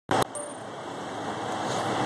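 A short handling knock right at the start, then a steady haze of outdoor traffic and vehicle noise.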